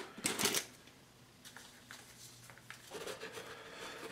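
Plastic tub of DTF transfer powder being handled and the powder shaken out over paper: a short rough rustle about half a second in, then faint scattered ticks and rustles.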